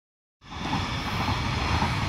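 Stadler GTW-E electric train passing over a level crossing: a steady rumble of wheels on rails and running gear that starts abruptly about half a second in.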